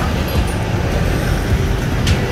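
Steady rumble of road traffic, a motor vehicle passing on the road alongside.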